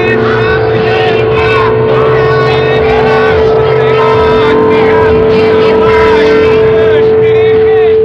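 A loud, steady sine test tone held at one pitch, with a dense jumble of overlapping voices and other sounds layered over it.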